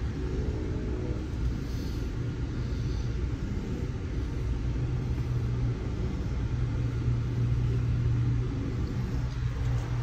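Steady low rumble and hum inside an Amtrak passenger coach, from the train's running machinery.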